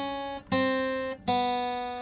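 Acoustic guitar chords of a descending walk-down on the B string, played off a D minor shape. One chord is ringing at the start, then two more are struck, about half a second and a little over a second in, each left to ring and fade.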